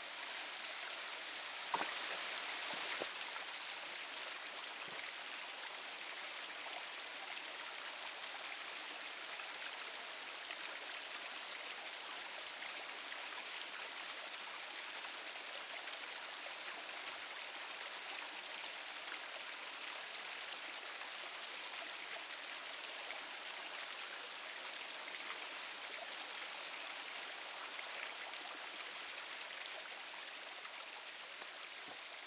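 Small mountain waterfall splashing down over rocks: a steady rush of falling water, with one brief click about two seconds in.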